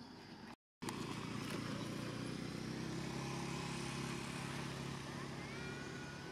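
An engine running steadily, coming in abruptly after a brief dropout less than a second in and slowly fading towards the end.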